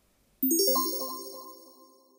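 A short chime sting: a quick rising run of bell-like notes sets in suddenly about half a second in, then rings out and fades over about a second and a half.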